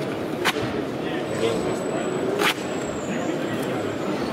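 A knife cutting through folded cardboard: two short, sharp cuts about two seconds apart, over the chatter of a busy hall.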